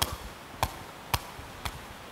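A woven sepak takraw ball headed upward repeatedly: four sharp knocks, about two a second.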